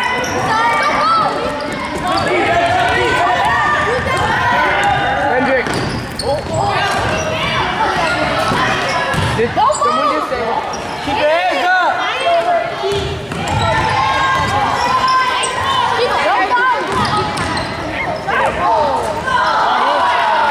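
Youth basketball game in a gym: the ball dribbling and bouncing on the hardwood under indistinct shouting and chatter from players and spectators, echoing in the hall.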